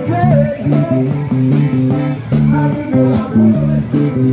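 A live street band playing: electric guitar and bass guitar over a drum kit, with a repeating bass line and a steady beat of cymbal hits.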